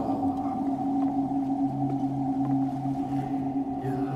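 Dark electronic music drone: several low synth notes held steady and layered, with a whale-like tone, the lowest note pulsing about twice a second from about a second in.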